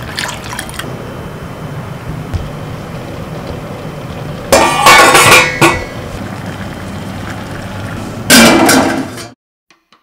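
Milk pouring from a plastic packet into a stainless-steel pot for a moment at the start, then two loud bouts of steel clatter, about four and eight seconds in, as the pot and its steel plate lid are handled on the gas stove. The sound cuts off abruptly about a second before the end.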